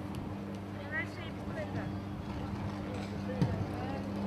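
Underground electrical cable fault burning up through the pavement, giving a steady low buzzing hum, with a short louder sound about three and a half seconds in. Faint bird chirps about a second in.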